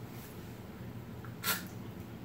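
Quiet room tone with a steady low hum, broken once by a brief sharp noise about one and a half seconds in.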